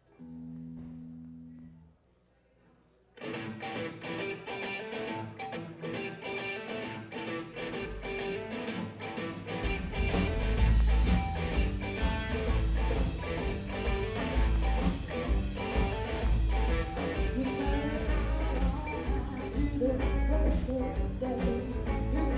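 Live blues band with electric guitar and drums starting a song. A single held note sounds first, the band comes in about three seconds in, and the bass and kick drum get much heavier about ten seconds in.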